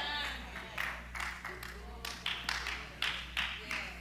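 Congregation voices calling out in response, with a few scattered handclaps at irregular moments, over a steady low hum.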